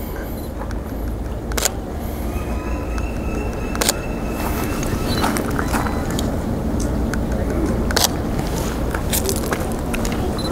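DSLR shutter firing: several single sharp clicks spaced a second or more apart, over a steady low outdoor rumble.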